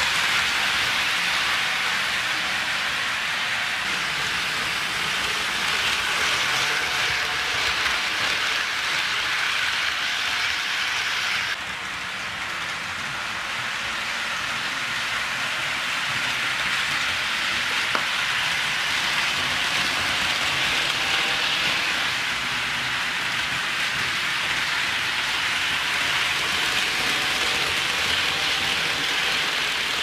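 HO scale model trains running on track laid on a wooden floor: a steady rushing rattle of metal wheels on the rails with a faint motor whine. The sound drops suddenly a little over a third of the way in, then builds back.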